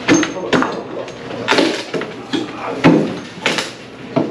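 Sheet-metal top-loading washer cabinet being tipped and moved by hand: a run of irregular knocks and bangs with scraping in between.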